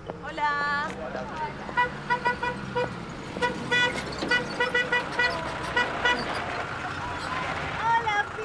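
A van's horn sounding a rapid series of short toots in quick bursts, insistent honking to call someone out.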